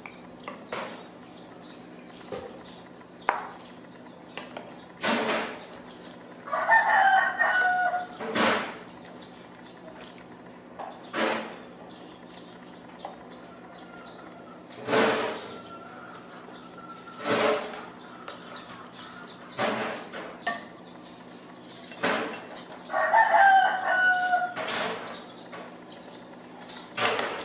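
A rooster crowing twice, once about six seconds in and again near the end, each a long call of a second or so. Short, sharp knocks come every couple of seconds throughout.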